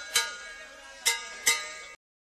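A wrestling ring bell struck in quick pairs, ding-ding, each strike ringing out briefly.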